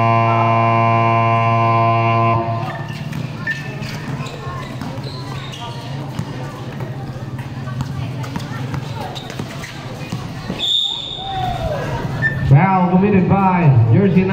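A basketball game buzzer holds one steady tone and cuts off about two and a half seconds in. Crowd noise and ball bounces on the court follow, with a short whistle blast about eleven seconds in and a man's voice near the end.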